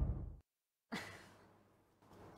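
Intro music fading out, then a brief soft breath like a sigh about a second in, then faint studio room tone.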